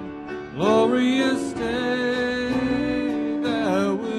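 A man singing a slow song with instrumental accompaniment. He holds long notes, with a slide up in pitch about half a second in.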